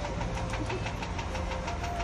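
A motor vehicle engine running steadily nearby: a low, even rumble with a fast regular tick.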